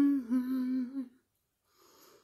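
A woman's closed-mouth hum, a wavering 'mmm' of enjoyment while eating a sub sandwich, that stops a little over a second in.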